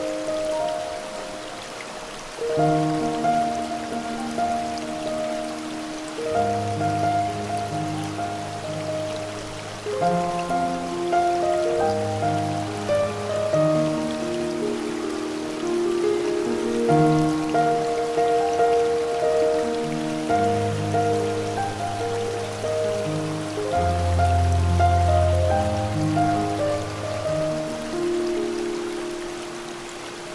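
Slow, calm piano music of long held notes with occasional deep bass notes, over a steady hiss of falling water from a waterfall recording.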